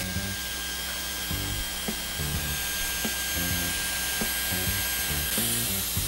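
Dyson Airwrap styler running with a curling barrel wound into short hair: a steady rush of air with a thin, high motor whine.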